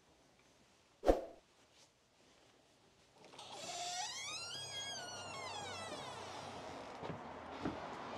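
A single sharp clunk from the shop door's latch about a second in, then a long squeak that rises and falls in pitch as the door swings open.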